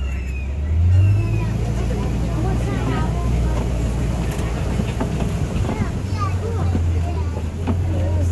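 Safari ride truck's engine running with a steady low drone as it drives, the pitch stepping up about a second in; passengers talk in the background.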